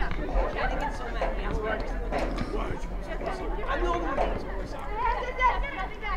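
Several voices of players and spectators at a girls' soccer match calling out and chattering, overlapping and unintelligible, over a steady low rumble.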